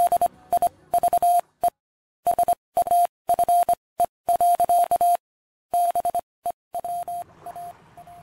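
Electronic beeping at one steady medium pitch, keyed on and off in a run of short and long tones like Morse code, with dead silence between them: the sound effect of a channel logo sting.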